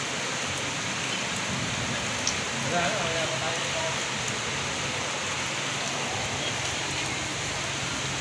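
Rain falling steadily onto street floodwater, an even hiss of drops hitting the water surface. A faint voice is heard briefly about three seconds in.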